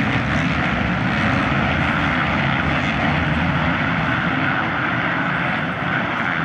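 Several 450cc four-stroke motocross bike engines running hard around the track at once, blending into one steady, loud engine noise.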